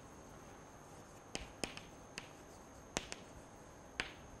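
Chalk tapping and scraping on a chalkboard as words are written: about half a dozen faint, sharp, irregularly spaced clicks over quiet room tone.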